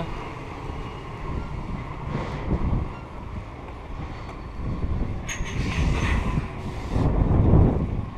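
Low rumble of heavy lorries' diesel engines in a loading yard, with two louder noisy surges about five and seven seconds in.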